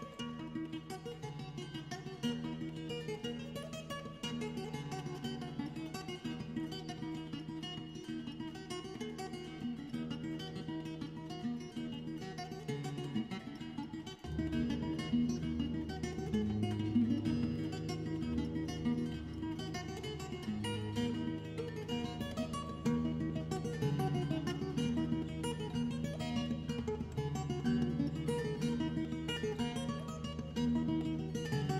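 Playback of a multi-mic fingerstyle acoustic guitar recording, a Dorian, Celtic-sounding tune, running through the mix. About halfway through, the playing dips for a moment and comes back louder and fuller, with deeper bass notes.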